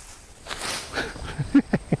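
Brief rustle of leafy potato vines being tossed into the brush, followed near the end by the start of a short laugh.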